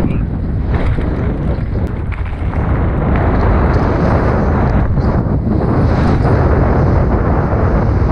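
Wind buffeting the microphone, with the loud, steady rumble of a mountain bike riding over rough trail and a few sharp knocks.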